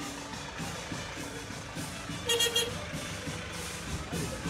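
A small truck driving past with road noise, under faint brass band music, and one short high toot a little past halfway.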